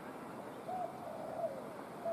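A bird's low, hooting or cooing call, held for under a second and falling away at the end, starting a little past a third of the way in, with the next call beginning right at the end.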